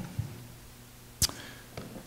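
Handling noises at a wooden pulpit: a soft knock just after the start, then one sharp click a little over a second in and a faint tick near the end, over a low steady hum.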